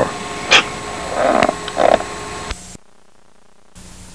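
A few irregular clicks and short knocks. The sound cuts out suddenly about two-thirds of the way through, and an even hiss of video-tape static comes in near the end.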